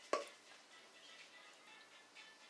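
A single sharp knock just after the start, then faint, quiet room noise.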